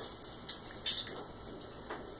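A few light, separate clicks and taps of dogs' claws on a tile floor as the dogs shift about.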